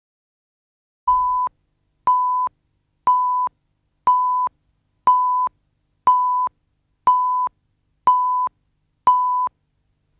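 Countdown leader beeps: nine short, identical pips of one steady pitch, one every second, each about half a second long, starting about a second in and marking off the numbers of a video countdown.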